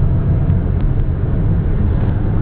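Steady low rumble of car engine and road noise heard from inside the cabin.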